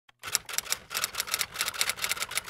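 Typewriter keystroke sound effect: a rapid, slightly irregular run of sharp key clicks, about seven a second.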